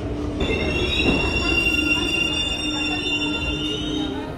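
New York City subway train's wheels squealing on the rails as it comes into the platform: a high squeal of several steady shrill tones that starts about half a second in and holds to the end, over a low rumble.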